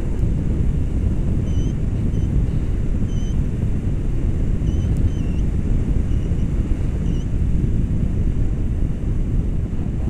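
Airflow rushing over the camera microphone of a paraglider in flight, a steady loud rush. Faint short high beeps come and go through the first seven seconds or so: a flight variometer signalling lift.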